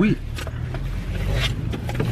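Car running, heard from inside the cabin as a steady low rumble.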